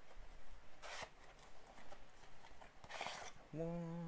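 Toy packaging being opened: a cardboard box handled and a plastic tray slid out of it, with two short rustling scrapes about a second in and about three seconds in.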